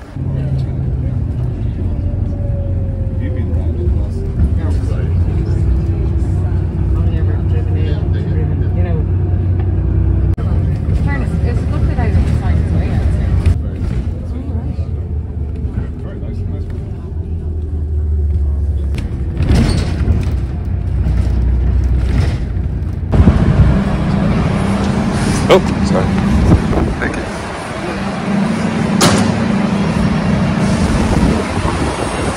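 Bus engine running with a low, steady drone, heard from inside the bus. The drone changes character about three-quarters of the way through, and a few sharp knocks come in the later part.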